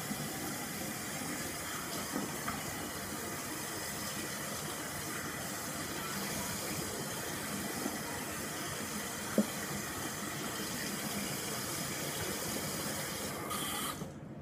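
Tap water running steadily into a bathroom sink, with one sharp knock about nine seconds in; the water stops suddenly at the very end.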